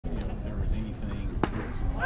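One sharp crack of a baseball impact about one and a half seconds in, over a steady low rumble of wind on the microphone and faint voices.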